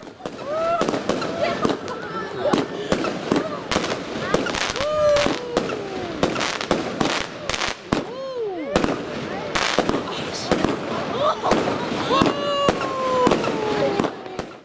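A fireworks display going off, with dozens of sharp bangs and crackles in quick, irregular succession. People's voices call out in rising and falling tones between the bangs.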